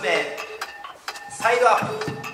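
A person's voice in two short bursts, over a steady backing with many sharp, clinking clicks.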